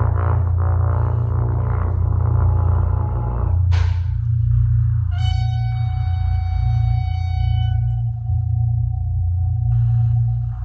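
Contemporary piece for horn and live electronics: a pulsing horn tone transformed by the computer, cut off by a sudden sweep about four seconds in. A single steady electronic tone then holds, with high sustained tones over it until about eight seconds in, all over a deep low drone.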